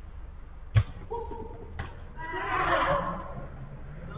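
A sharp thump of a football being struck about a second in, then players shouting: a short call followed by a longer, louder yell, heard thin through a CCTV camera's microphone.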